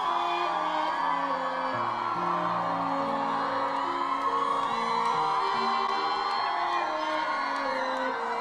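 Live concert recording of a slow ballad intro on piano and strings over long, slowly changing bass notes, with the crowd whooping and cheering throughout.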